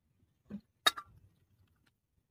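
Hands mixing raw fish pieces in a stainless steel bowl: a soft squelch, then a single sharp knock on the bowl just before one second in, with a brief ring.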